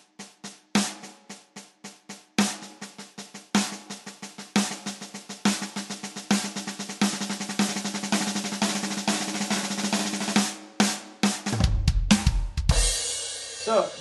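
Electronic drum kit's snare pad played with sticks in an accented paradiddle-diddle (right, left, right, right, left, left): one loud full stroke followed by five quiet taps in each group, the groups getting faster as it goes. Near the end come a few low, deep drum hits.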